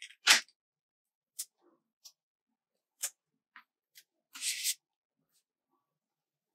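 Paper sticker sheet being handled: a sharp click just after the start, a few light ticks, then a brief crackly rustle about four seconds in as a sticker is peeled from its backing.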